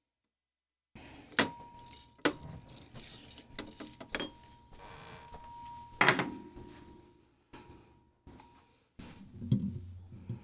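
Sharp clicks and knocks from handling a reel-to-reel tape deck and its freshly spliced tape, the loudest knock about six seconds in. A faint steady ringing tone from microphone feedback runs under the clicks.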